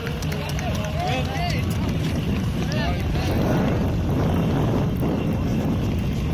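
Several voices calling and whooping in the first three seconds over a steady low rumble, which continues on its own afterwards.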